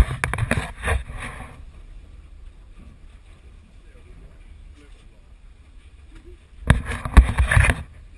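Handling noise from a handheld action camera: cloth rubbing and knocking against the camera housing, loud for the first second or so and again near the end, with a quiet low rumble between.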